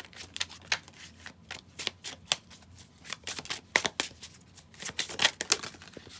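A deck of tarot cards being shuffled by hand: a quick, irregular run of card snaps and flicks.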